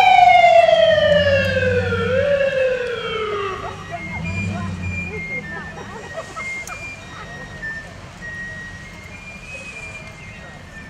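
A siren winding down: one long tone falling steadily in pitch, with a brief rise about two seconds in, then dying away about four seconds in.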